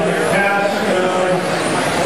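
Electric 1/10-scale touring RC cars with brushless motors running laps on a carpet track, a steady mix of motor whine and tyre noise. Voices, probably the race announcer's, are heard over it.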